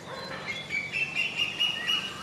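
A bird calling: a run of short, clear whistled notes that step up in pitch and grow louder through the second half.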